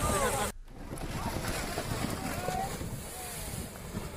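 Rushing of the flooded river and wind buffeting a phone microphone at the riverbank, with people's voices that cut off abruptly about half a second in and then carry on only faintly.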